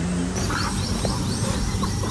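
Outdoor ambience: a steady low rumble, with a small bird calling in a rapid series of short, high, falling chirps about half a second in.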